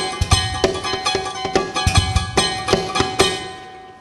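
Amplified acoustic guitar, its body picked up by an internal microphone, played as guitar and drum at once: ringing string notes over a steady rhythm of percussive thumps and slaps on the guitar, about three hits a second, fading away near the end.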